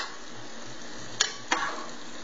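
A metal fork clinking against cookware while green beans are served out of a pot: a sharp click at the start and two more a little over a second in, over a steady sizzling hiss from the pans on the stove.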